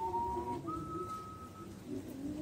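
A person whistling a few held notes, stepping up to a higher note a little after half a second in, over a lower steady tone.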